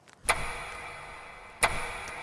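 Clock-ticking sound effect: two sharp ticks about a second and a half apart, each ringing off, over a steady low tone.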